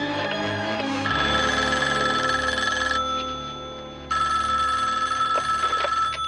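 Desk telephone ringing twice, each ring about two seconds long with a short gap between, starting about a second in, over background music.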